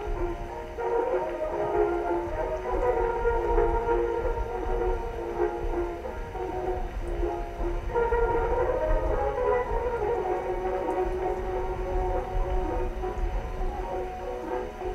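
Music from a record playing on a 1914 Victrola VV-X acoustic gramophone, thin and narrow in range, with sustained melody notes that shift to a new phrase about eight seconds in. A low continuous rumble sits underneath.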